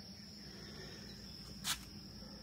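A faint, steady high-pitched whine over a low hum, with one short click near the end.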